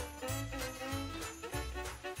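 Background music: a festive tune with jingle bells shaken in a steady rhythm over a bass line.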